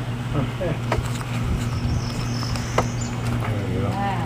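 A steady low machine hum, with faint voices in the background and a few light clicks.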